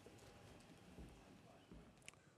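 Near silence: hall room tone with a few faint low thumps, about a second in and again near the end.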